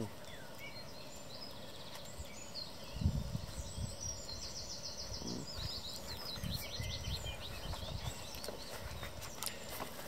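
A baby pine marten eating wet food from a plate close to the microphone: an irregular run of soft, low chewing and smacking sounds from about three seconds in.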